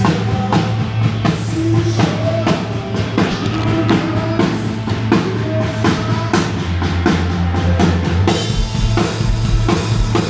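Live rock band playing loudly in an arena, heard from the crowd, with the drum kit's bass and snare driving a steady beat of about two hits a second. About eight seconds in the music shifts to a heavier bass line with more cymbal wash.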